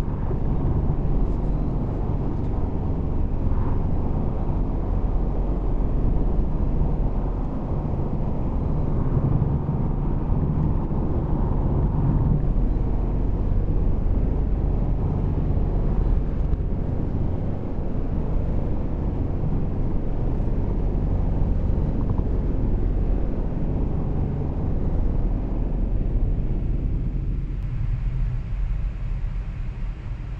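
Steady tyre and wind noise inside the cabin of a Tesla electric car at highway speed, a low rumble with no engine note. It eases slightly near the end.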